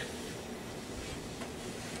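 Treadmill motor and belt running steadily under a child's slow barefoot walking.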